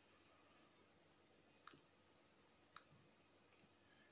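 Near silence with three faint, short clicks, the first near the middle and the rest about a second apart: fingers or nails tapping and handling a smartphone.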